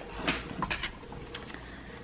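Cardstock paper rustling and crackling in a few short, soft strokes as it is handled and creased along a fold.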